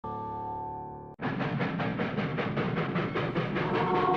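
A held musical tone for about a second that cuts off abruptly, then a steam locomotive chuffing fast and evenly, about five chuffs a second, with music tones coming in under it near the end.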